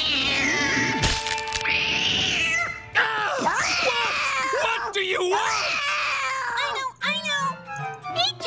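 Cartoon cat yowling loudly and at length, its cry sliding up and down in pitch, with a short break about three seconds in.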